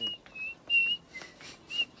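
A person whistling a quick string of short, high notes, mostly on the same pitch with one lower note in the middle.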